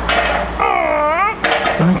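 A connecting-rod (big-end) nut on a Toyota 5L diesel engine being turned through its final 90-degree angle with a breaker bar and socket. It gives one short squeal under load that dips and then rises in pitch, with a few metallic clicks around it.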